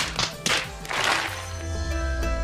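Three quick hand slaps, a facepalm sound effect, in the first second or so, followed by background music.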